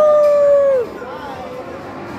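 A child on a spinning swing ride gives one long, held shout of excitement. It rises at the start, holds a steady pitch for under a second, then drops away, over the background babble of a busy play area.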